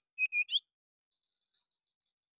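Oriental magpie-robin singing: three short, clear whistled notes in quick succession, the last one rising, then a faint soft twitter about a second later.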